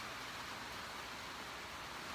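Steady rain falling, an even hiss with no distinct drops or pauses.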